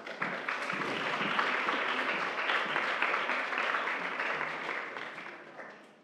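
Audience applauding: steady clapping from many hands that starts at once and dies away over the last second or so.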